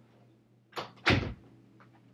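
A door closing: a short knock, then about a third of a second later a louder, heavier thud.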